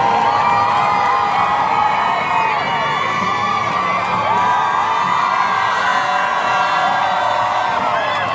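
A crowd of spectators cheering and screaming, with many high voices overlapping in long cries.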